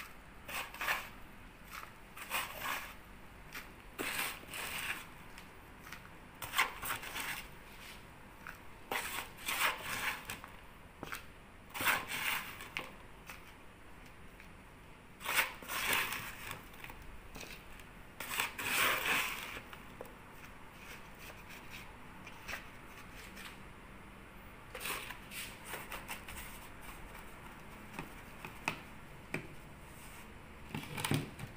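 Hands scooping and pressing dry potting soil into a plastic pot, heard as irregular bursts of rustling and scraping. The longest bursts come about halfway through.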